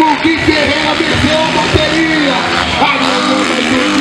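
Dirt bike engines revving up and down as two motocross bikes ride past, mixed with a public-address system playing music.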